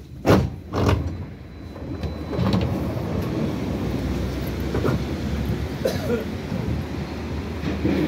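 BKM 802E tram standing at a stop: two sharp knocks in the first second, then the steady low hum of the tram's onboard equipment, with a few faint voices.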